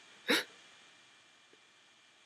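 One brief vocal sound from a man, about a third of a second in, with near silence otherwise.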